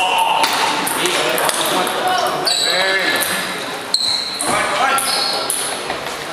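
Table tennis ball clicking off bat and table during a rally, with a sharp click about four seconds in, over steady background talk in a large, echoing hall.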